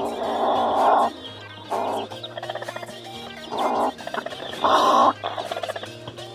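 Broody hen calling in four bursts, the first about a second long, as a hand reaches under her in the nest: a sitting hen's defensive call at her disturbed clutch.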